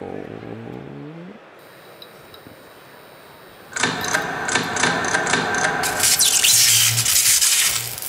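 Staged electrical power-up sound effect: a short rising tone, then about four seconds in a sudden loud crackling, buzzing surge that is loudest near the end as a wall of lights switches on.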